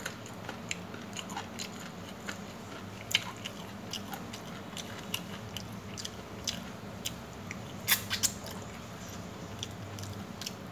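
Close-up eating sounds of someone chewing chicken and rice: many small wet clicks and smacks, with a few sharper ones about three seconds in and near eight seconds.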